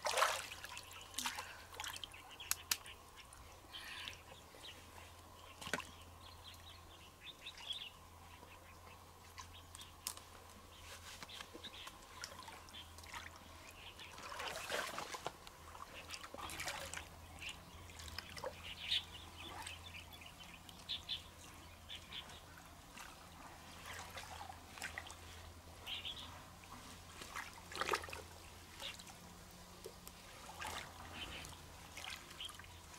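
Shallow stream water splashing and dribbling in scattered short bursts as hands grope in the water and lift out mussels, the loudest splash right at the start.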